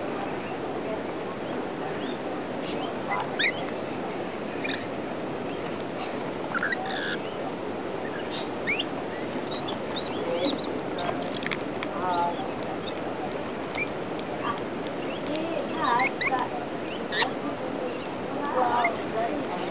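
Rainbow lorikeets feeding in a flock, giving short high chirps and squeaky calls, some sliding up or down in pitch, scattered through over a steady background noise, with the loudest calls about nine seconds in and again near the end.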